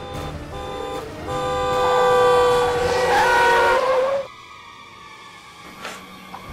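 Pickup truck horn sounding as a warning: a couple of short honks, then a loud, long blast of about three seconds that steps up in pitch near its end and cuts off suddenly.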